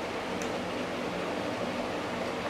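Steady background hiss of room noise, like a fan or air conditioner running, with no distinct events.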